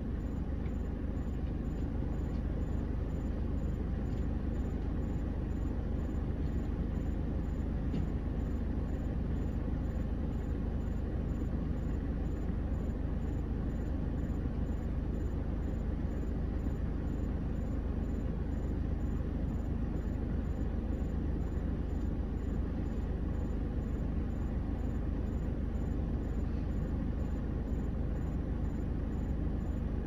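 Heavy truck's diesel engine idling steadily, a low drone heard from inside the cab.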